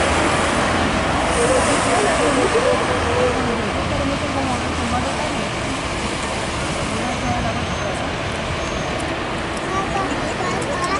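City street traffic: vehicles passing close by with a steady engine and tyre rumble, loudest in the first few seconds, with people's voices in the background.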